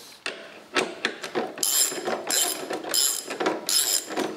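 Ratchet wrench clicking in repeated strokes, about one every two-thirds of a second, undoing a bolt; a few separate knocks of metal come first.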